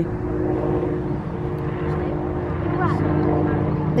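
A steady engine drone running in the background, its pitch shifting slightly a little before three seconds in.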